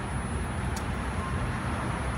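Steady low hum and hiss with a thin, continuous high-pitched whine from a DC fast-charging setup in operation while it charges the car.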